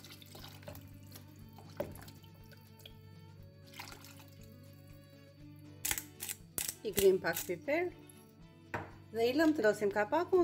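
Liquid poured from a jug into a pan of stew, faint under background music. About six seconds in a pepper mill grinds in a few quick crackles.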